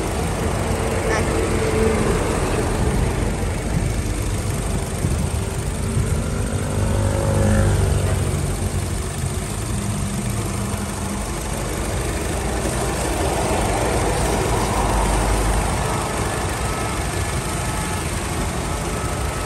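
A 2017 Honda City's 1.5-litre four-cylinder petrol engine idling, heard close up in the open engine bay, running smoothly and steadily, with a brief swell in loudness about halfway through.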